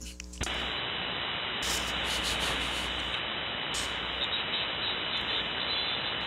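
Steady static hiss of 75-metre band noise from a radio receiver, with no station talking. It comes up about half a second in as the transmitter unkeys, is cut off above about 4 kHz by the receive filter, and carries a faint high steady tone near its top.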